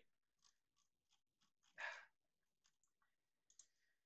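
Near silence, with a few faint mouse clicks and one soft puff of noise about two seconds in.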